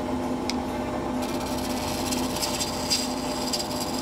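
Wood lathe running steadily with a hum while a hand-held turning chisel cuts into a spinning oak blank. A rasping cutting noise grows stronger about a second in.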